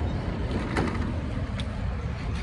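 City street traffic: cars driving slowly past close by, a steady low rumble of engines, with a short click a little under a second in.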